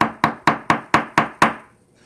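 A quick, even series of seven sharp knocks, about four a second, each with a short ringing tail, stopping about a second and a half in.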